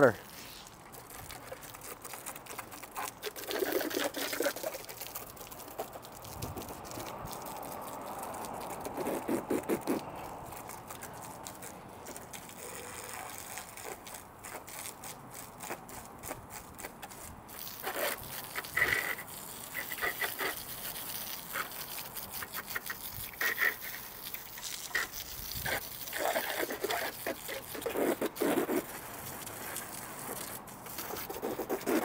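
Garden hose spray hitting a WHILL Ri mobility scooter: a steady hiss of water with crackling spatter on the seat and body, and a few louder splashing bursts along the way.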